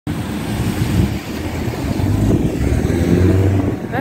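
A motor vehicle's engine running nearby, a steady low rumble with a faint hum.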